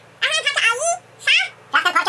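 High-pitched, garbled vocal sounds from a person trying to speak with a cheek retractor holding the mouth wide open, in three short rising-and-falling bursts.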